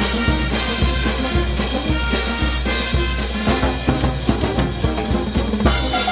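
A Peruvian brass band playing a huayno. A drum kit, bass drum and cymbals keep a steady, driving beat under sousaphones, saxophones and trumpets.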